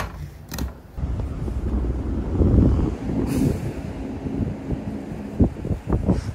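A heavy-duty stapler clacks at the very start and again just after. From about a second in, a steady low rumble of street traffic runs on, with a short hiss about three seconds in.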